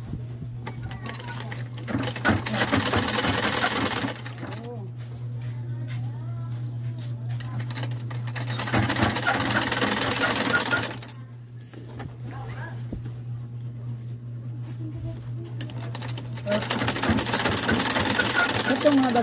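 Old black cast-iron sewing machine stitching fabric in three bursts of fast, even clatter, each about two seconds long. The first comes about two seconds in, the second just past the middle, and the third near the end, with short pauses between.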